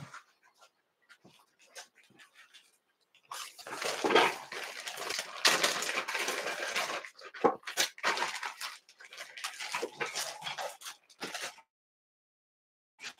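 Rustling and crinkling of fly-tying material packets being handled and searched through. A few light clicks come first, then about eight seconds of steady irregular rustling that stops shortly before the end.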